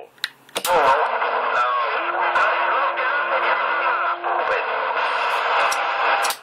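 CB radio loudspeaker carrying an incoming transmission: narrow, band-limited audio full of wavering, warbling sound, with a steady low tone held from about two seconds in until about four and a half seconds.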